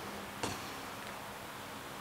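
Quiet room tone of an indoor sports hall with a faint steady hum, and one soft knock about half a second in.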